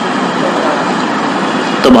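Steady, even background noise with no distinct events, in a pause between phrases of a man's amplified speech, which starts again near the end.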